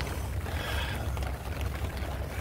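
Wind buffeting the microphone outdoors: a low, uneven rumble with a faint hiss near the middle.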